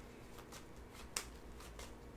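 Faint handling of tarot cards in a quiet room, with a few soft clicks and one sharp click just past halfway, over a low steady hum.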